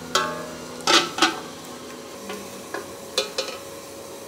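Aluminium pot lid being set down onto a metal soup pot: three loud clanks in the first second and a half, the first with a short metallic ring, then several lighter knocks and taps.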